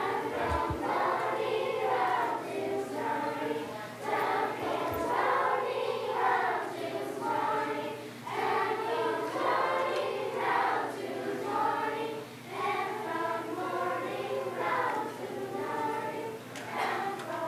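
Children's choir of elementary-school singers singing together, in phrases of about four seconds with short breaks between them.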